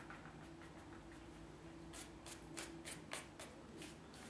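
Faint scratchy strokes of a flat hake brush against watercolour paper on an easel: a run of short strokes, about three a second, in the second half, over a faint low hum.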